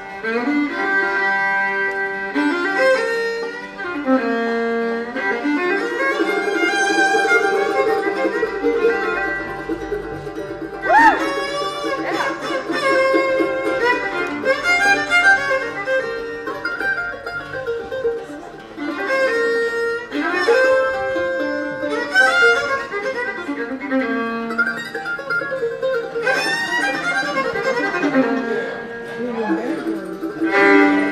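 Acoustic bluegrass band playing a fast instrumental fiddle tune live: fiddle leads with sliding notes over banjo rolls, guitar and mandolin chop chords and upright bass.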